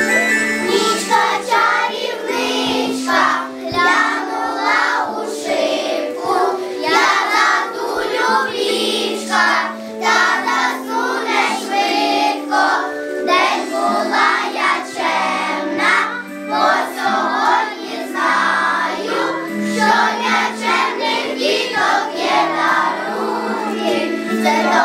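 A children's choir singing a song together over instrumental accompaniment, which holds steady low notes that step from one pitch to the next beneath the voices.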